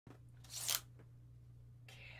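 A brief rustling scrape, about half a second in and lasting about a third of a second, over a low steady room hum.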